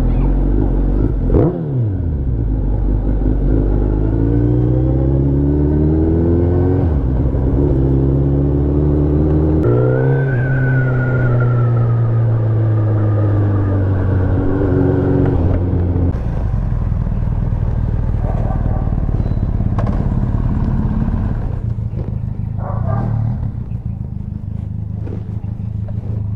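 Suzuki Hayabusa's inline-four engine pulling through the gears: the revs rise steeply and drop back at each gear change, three times in the first ten seconds, then hold a steady cruising note. After about sixteen seconds it settles into a lower, even running note.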